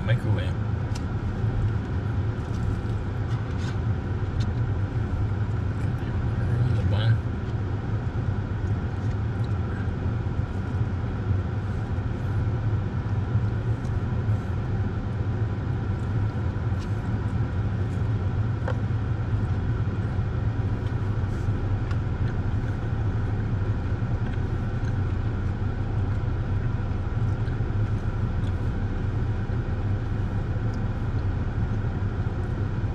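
Steady low hum of a stationary car running, heard from inside its cabin, with a few faint light clicks.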